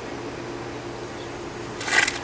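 A steady low background hum. Near the end, a short hiss as the fuse of a homemade sparkler bomb (a bundle of sparklers taped together) catches and starts to spark.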